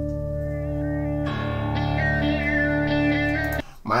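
Electric guitar music from a heavy metal cover song: a held chord, joined about a second in by a higher lead line with wavering notes, cutting off suddenly near the end.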